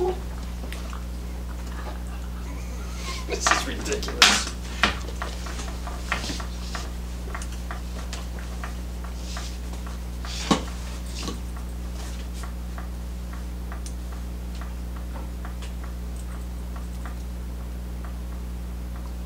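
Chocolate Labrador puppy clambering up onto a person's lap: scuffling and a handful of sharp knocks, loudest about four seconds in, with one more about ten seconds in. After that, faint regular ticking over a steady low electrical hum.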